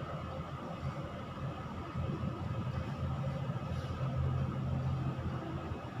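A steady low background rumble, slightly stronger through the middle.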